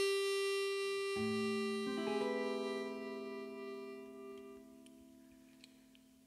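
A harmonica holds a long final note that fades away, while clean electric guitar chords come in about a second in and again a second later and ring out slowly, the music dying away to a close.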